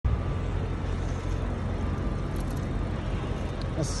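City street traffic: a steady low rumble of motor vehicle engines with road noise, a few faint clicks, and a voice starting at the very end.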